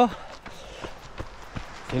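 A runner's footfalls at a steady jogging pace, a few soft thuds under a low steady hiss.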